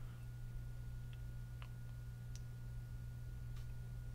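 Quiet background of the recording: a steady low electrical hum with a faint high steady tone, and a few faint, scattered clicks.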